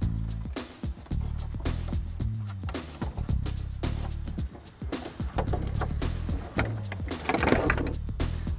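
Background music with steady low bass notes, over scattered light clicks and rustles of nylon belt webbing and its metal adjuster and fitting being pushed through a plastic console opening.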